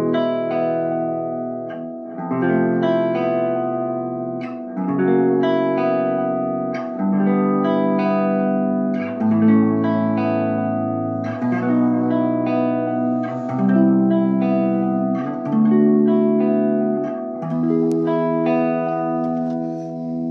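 Electric guitar on a clean tone with delay, picking a looping chord progression: one finger shape slid to different places on the neck while two open strings keep ringing. The chord changes about every two seconds.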